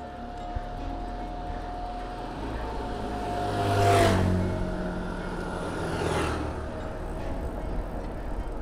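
A motor vehicle passing close by, loudest about four seconds in, its engine note dropping in pitch as it goes past. A second, lighter pass-by follows about two seconds later.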